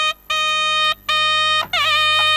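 Nadaswaram, the South Indian double-reed temple pipe, playing held notes, broken by three short pauses, with the pitch starting to bend and waver near the end.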